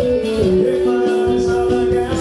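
Live band music played loud over a PA: guitar and a steady beat under a voice, with one long held note starting about half a second in.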